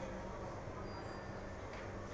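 Room ambience: a steady low hum with faint, indistinct voices in the background.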